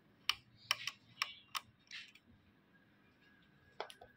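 Sharp clicks of a small screwdriver working on the screws and plastic carriage of an Epson L805 print head: five quick clicks in the first second and a half, a short scrape, then one more click near the end.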